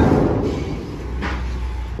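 A plastic carrier bag crinkling and rustling right against the microphone. It starts suddenly and fades over the two seconds, over a low steady rumble.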